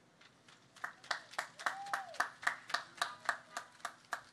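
Applause after a speech: a few hands clapping steadily in distinct claps, about three to four a second, starting about a second in.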